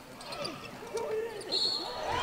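Basketball game sounds: a ball bouncing on the hardwood court under faint players' voices. Near the end a referee's whistle sounds a steady high note as contact is called on a made basket.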